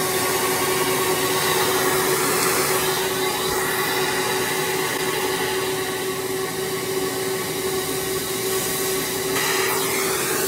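Shop vac running steadily, with a steady whine, its suction pulled through a homemade acrylic hood on electric hair clippers while they cut hair. It is a bit loud, the narrow nozzle focusing the noise.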